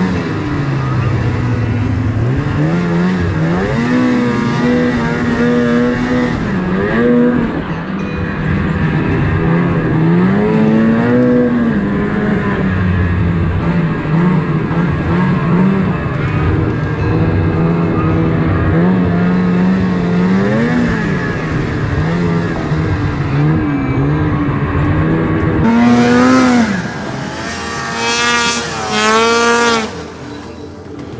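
Snowmobile engine running along a trail, its pitch rising and falling as the throttle is worked. Near the end, a snowmobile revs hard several times in quick rising sweeps.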